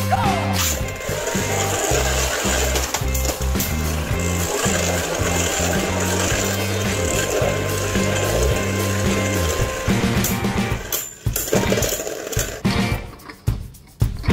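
Beyblade spinning tops launched into a plastic stadium, whirring and grinding under background music with a steady bass line. About ten seconds in, the music drops away and the tops knock together in quick, irregular clatters, ending with one top bursting apart.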